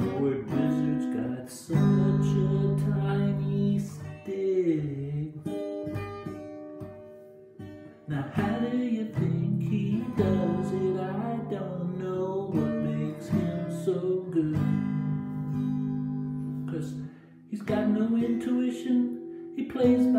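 Acoustic guitar strummed in steady chords while a man sings along. The sound drops away briefly twice, about seven seconds in and again near the end.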